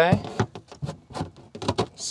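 A carbon fiber kitchen-extension panel being slid into its mount on a trailer galley: a quick string of knocks and clicks as it seats.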